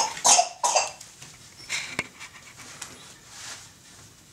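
A person coughing: three quick coughs right at the start, then one more about two seconds in, with a sharp click.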